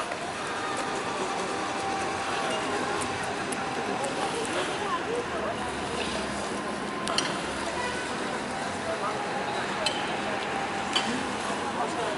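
Outdoor ambience of a busy public square: a steady background of distant voices, with a few faint clicks and clinks.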